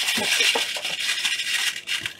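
Rustling and rattling of materials handled on a fly-tying bench: a steady, hissy rustle that stops suddenly near the end.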